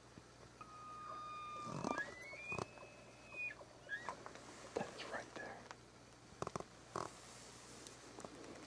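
A faint bull elk bugle: a held note that climbs to a high whistle about two seconds in and breaks off, followed by a few short grunting chuckles. It is the bull answering a call.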